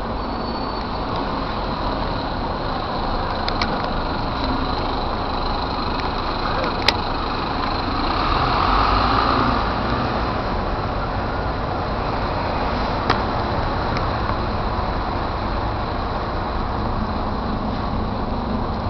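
Double-decker city bus moving past at close range: steady engine and road noise that swells for a couple of seconds around the middle, with a few sharp clicks.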